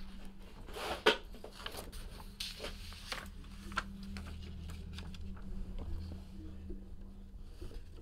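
Light handling noises on a tabletop: scattered taps, clicks and paper rustles as a sheet of paper and card boxes are moved, with one sharper click about a second in, over a steady low electrical hum.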